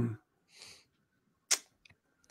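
The tail of a spoken 'um', then a short soft hiss like a breath, and about one and a half seconds in one sharp click followed by two faint ticks, from a talk-show microphone during a pause in speech.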